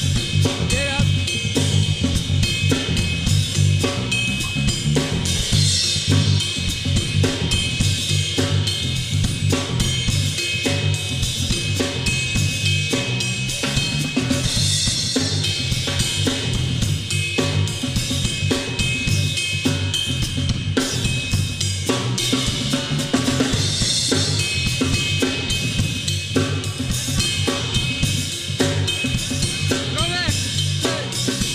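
Live funk-soul groove played on a drum kit, snare, kick and cymbals in a steady danceable beat, with a low stepping bass line underneath; the band is playing the song's bridge.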